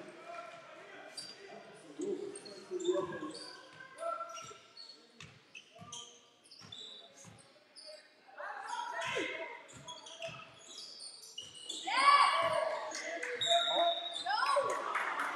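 Basketball being dribbled on a sports-hall floor, a thud roughly every two-thirds of a second, echoing in the large hall, with short high squeaks scattered through. Voices call out loudly about halfway through and again near the end.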